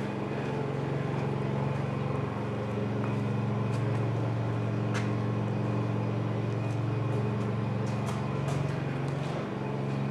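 Electric fans in a home-built paint booth running with a steady hum that holds several fixed tones, with a few faint clicks.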